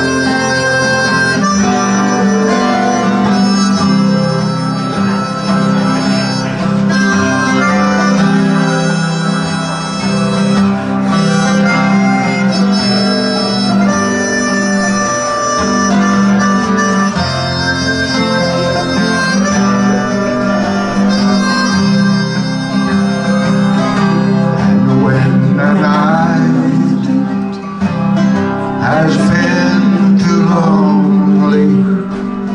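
Harmonica playing a melodic solo over acoustic guitar accompaniment, the harmonica's tones held steady and sustained.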